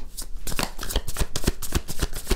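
A deck of oracle cards being shuffled by hand: a quick, even run of card flicks, about seven a second.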